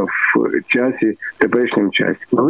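Speech only: a man talking over a telephone line, the voice narrow and thin with little top end.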